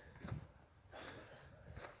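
Near silence: faint outdoor background between words, with a brief soft hiss about a second in.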